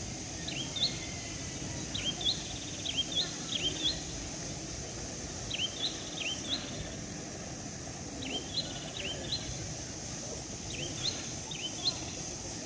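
A small bird chirping, short quick notes in clusters of two or three, repeated every second or two, over a steady high hiss and low outdoor background noise.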